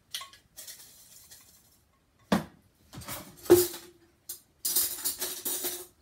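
Kitchen containers knocking and clattering on a countertop while a small stainless-steel canister is handled. A sharp metallic knock rings on about three and a half seconds in, and a second or so of metallic rattling comes near the end.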